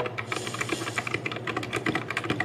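Fast typing on a compact white mechanical keyboard, a Royal Kludge RK G68, giving a quick, continuous run of keystroke clacks.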